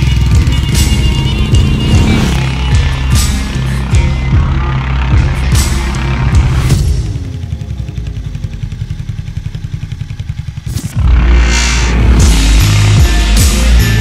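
Promo music with a heavy beat. Between about seven and eleven seconds in, the music drops out and a Harley-Davidson X440's single-cylinder engine is heard idling with a rapid, even pulse. The music comes back in with a hit.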